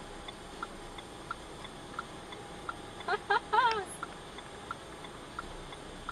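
A car's indicator relay ticking steadily inside the cabin, about three clicks a second.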